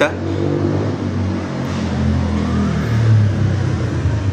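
A motor vehicle engine running loudly with a low, uneven hum.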